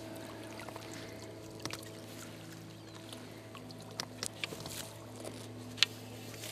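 Faint water sloshing and trickling around a landing net holding a just-netted carp, with scattered light clicks and knocks over a steady low hum. A sharp click near the end is the loudest sound.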